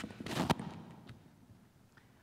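Brief rustling handling noise close to the microphone, ending in a sharp click about half a second in, then fading to quiet room tone.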